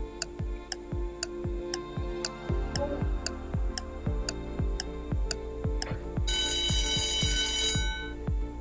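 Quiz countdown-timer sound effect: a clock ticking about twice a second over background music. About six seconds in, an alarm-clock ring sounds for over a second as the countdown runs out.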